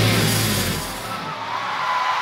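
A live heavy rock band's last chord ringing out and fading. The low end drops away about halfway through, leaving a thin held high tone over a fading haze of noise.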